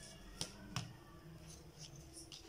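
Two light clicks in the first second, from a plastic drawing scale being handled and set against the drawing sheet.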